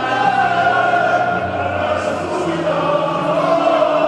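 Choir-like singing in long held notes over music, with no break.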